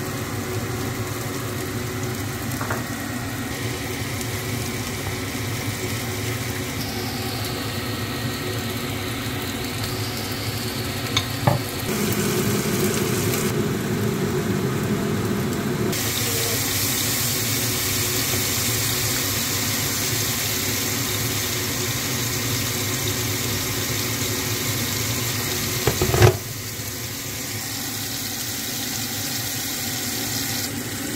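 Food sizzling in hot oil in a frying pan, a steady hiss that shifts in character a few times, with a sharp click about eleven seconds in and a louder one about twenty-six seconds in.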